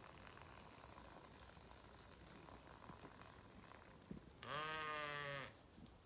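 A Zwartbles ewe bleating once, a single wavering call of about a second near the end, against otherwise faint outdoor background.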